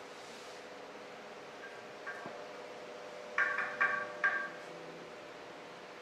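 Quiet room tone with a steady faint hum and a few small ticks. About three and a half seconds in come three short high-pitched notes in quick succession.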